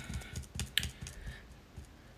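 Rapid, faint clicking of a tarot deck being shuffled in the hands.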